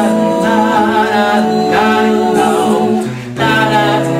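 Male a cappella vocal group singing held harmony chords over a sung bass line. A little after three seconds the sound briefly drops, then a new chord comes in on a lower bass note.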